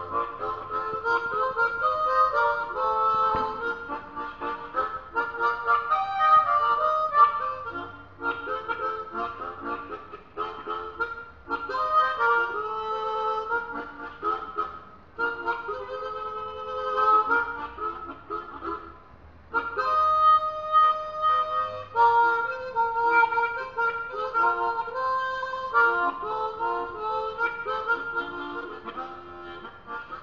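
Blues harp (diatonic harmonica) played alone, cupped in both hands, in phrases of held notes and chords broken by short pauses, the clearest one just before twenty seconds in.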